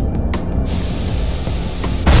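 Sound-effect soundtrack: a few sharp metallic clicks from an animated Newton's cradle, then, about two-thirds of a second in, a loud hiss starts suddenly and holds, over a low rumble.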